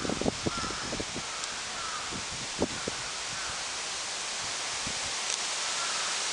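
Crows cawing in the distance, short calls repeating about once a second, over a steady outdoor hiss. A few short rustles and knocks in the first three seconds are the loudest sounds.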